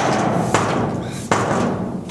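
A heavy door slamming shut and then two more heavy thuds against it, each about three-quarters of a second apart and each leaving a long booming ring.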